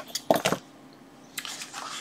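Multimeter test leads being handled and set down on a silicone work mat: a few light clicks and rustles from the cables and probe tips, in the first half second and again from about halfway.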